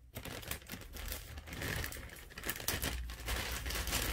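Clear plastic parts bag crinkling as it is handled, a dense run of small irregular crackles.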